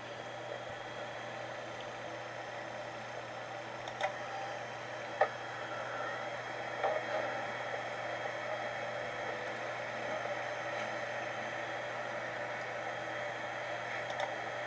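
Steady low hiss and hum from an audio recording being played back, with a few faint clicks about four and five seconds in.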